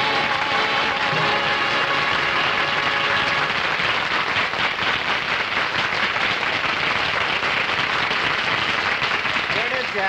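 Studio audience applauding at the end of a song, over the orchestra's final held chord, which fades out about three seconds in; the clapping carries on until a voice starts near the end.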